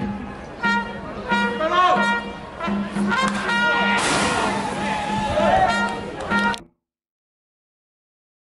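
Stadium cheering from the stands: trumpets playing over a steady drum beat, with fans chanting and shouting. The sound cuts off abruptly about two-thirds of the way through.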